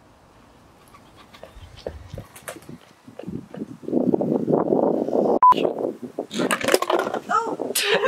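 A person's breathy, wordless vocal sounds fill the second half, loud and irregular. A short high beep sounds about five and a half seconds in.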